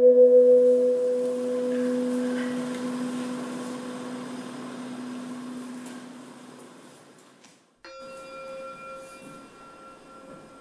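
A metal singing bowl ringing out after a strike and slowly fading over about seven seconds. After a brief break a second, higher and fainter ring follows.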